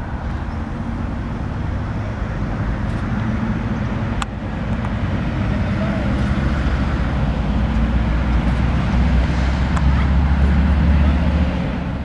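Road traffic noise: a steady low rumble of passing vehicles that grows louder toward the end, with a sharp click about four seconds in.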